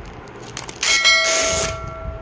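Bell ding sound effect of a subscribe-button animation. It strikes about a second in with a short hiss and rings on with several steady tones, fading after about a second and a half.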